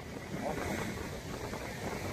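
Strong wind buffeting the microphone, a steady rushing noise, with surf on the beach behind it.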